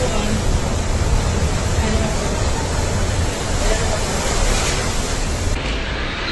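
Typhoon-force wind and driving rain, a loud, steady rush of noise battering the microphone, with faint voices now and then underneath.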